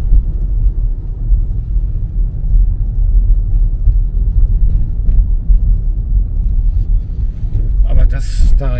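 Car driving along a street, heard from inside the cabin: a steady low rumble of engine and road noise with a few faint ticks.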